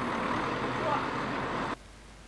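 Engine of a truck-mounted crane running steadily in the street, with no distinct rhythm. It cuts off suddenly near the end.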